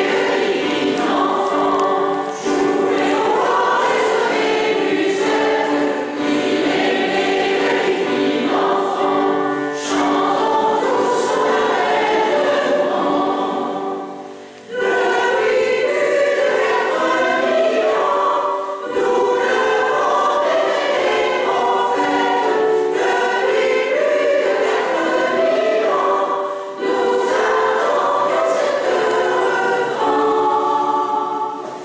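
Mixed choir of women's and men's voices singing a Christmas song in a church, with a brief pause between phrases about halfway through.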